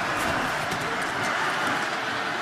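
Football stadium crowd, a steady din of many voices during a live play.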